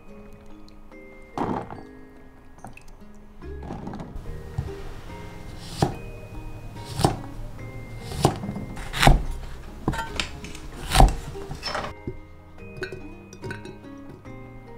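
Heavy cleaver chopping through fruit onto a thick wooden chopping block: a series of sharp knocks about a second apart, the loudest near the end, over background music. A single knock comes earlier, about a second and a half in.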